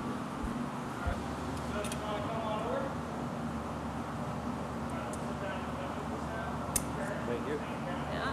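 Steady roar of glassblowing studio furnaces and ventilation, with one sharp click near the end.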